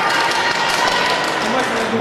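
Steady crowd noise in a large hall: a mix of voices and some clapping, with a faint steady tone in the middle.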